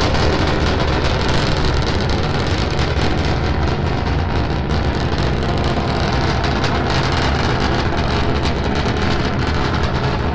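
Starship SN9's three Raptor rocket engines firing during ascent, heard as a loud, steady rumble with fine crackling throughout.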